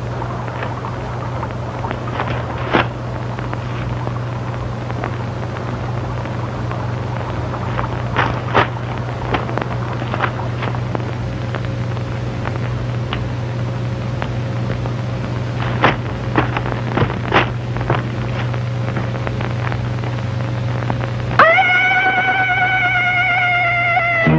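A steady low hum runs under a few scattered sharp clicks. Near the end a sustained musical note with overtones comes in, sagging slightly in pitch, as the score begins.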